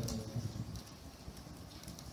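Quiet room tone in a hall: a steady low hum, with a couple of soft knocks in the first half second.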